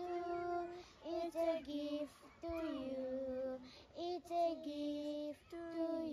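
Young girls singing a Christian worship song together, unaccompanied, in sung phrases of held notes with short pauses between them.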